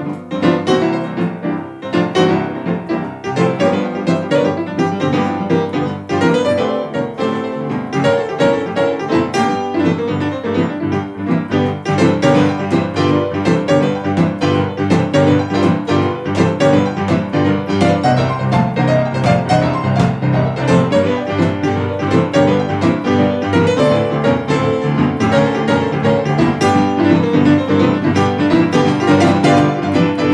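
Instrumental boogie-woogie played on two pianos at once, a grand piano and a digital stage piano, with a steady low bass line under quick, busy treble figures.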